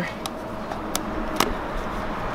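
Parachute suspension lines being worked into rubber-band stows on the deployment bag: three light, sharp snaps of elastic and line, spread across about a second and a half, over steady background noise.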